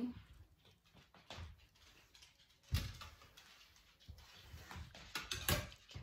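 Handling sounds at an ironing board: a clothes iron pressing cotton fabric and being set down with a sharp knock a little under three seconds in, then light clicks and fabric rustling as the cloth is handled near the end.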